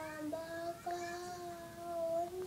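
A young girl singing, holding long, steady notes that step slightly higher in pitch about a third of a second in and again about a second in.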